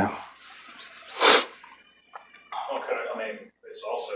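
A single sharp sneeze, short and loud, about a second in.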